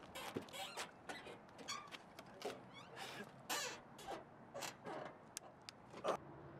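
An old car's door and body creaking and squeaking in short, irregular sounds as it is handled.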